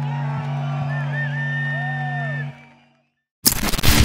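A rock band's last chord held and ringing out from the amplifiers over crowd shouts and a whistle, fading away about two and a half seconds in. After a brief gap, loud rock music starts abruptly near the end.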